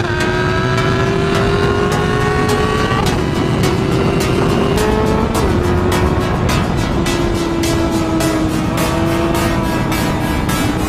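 Motorcycle engine running at speed, its pitch rising slowly and then dropping about three seconds in and again about halfway through, as at upshifts. Background music with a steady beat plays over it.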